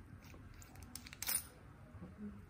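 Metal RCA plugs on audio signal cables clicking and clinking lightly as the cables are handled, a few quick clicks about a second in.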